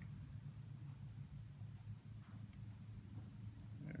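Faint low, steady hum of the room's background, with a few faint light ticks.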